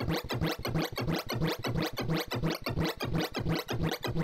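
Sorting-visualizer sonification from ArrayV: a rapid, even run of short synthesized blips, each pitched by the array values being compared and swapped as a Surprise Sort works through the final merge of 128 numbers.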